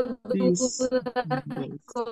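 A participant's voice over a video call, breaking up into rapid choppy fragments about ten a second: the caller's audio connection is cutting out.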